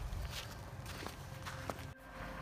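Footsteps of canvas sneakers walking on a sandy road shoulder with loose gravel: a few steps over steady outdoor background noise.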